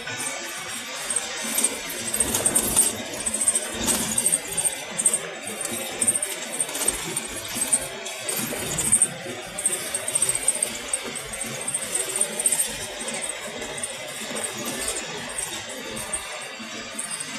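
Cabin noise of a car driving along a road: steady tyre and engine noise with irregular light rattling and jingling.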